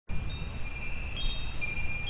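Chimes ringing: several high, sustained tones that start one after another and overlap, over a low steady rumble.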